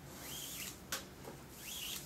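Nylon paracord strands sliding through the fingers as they are pulled tight into a braid: two swishing zips, with one sharp click between them about a second in.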